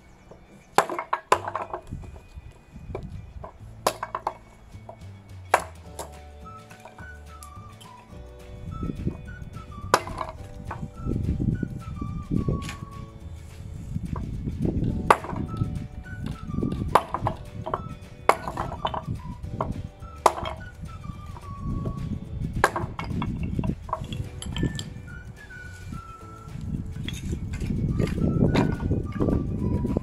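Hatchet splitting small pieces of dry alder into kindling on a wooden board: sharp chops at irregular intervals, a second to a few seconds apart, over background music.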